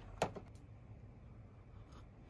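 A single short tap just after the start as a bag of coffee beans is set down on a tabletop, followed by quiet room tone.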